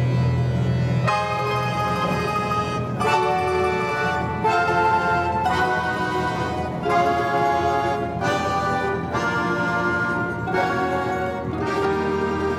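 Russian folk-instrument orchestra of domras and balalaikas with piano, playing a full ensemble passage. A held low bass note gives way about a second in to chords that change roughly every second and a half.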